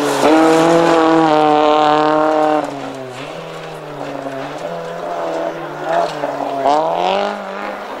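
Toyota Corolla coupe rally car passing at high revs, its engine holding one steady note and then dropping away about two and a half seconds in as it lifts off. Near the end a second rally car's engine rises as it approaches.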